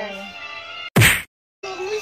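A single loud thump about a second in, followed by a moment of dead silence, a break in the recording, before sound resumes.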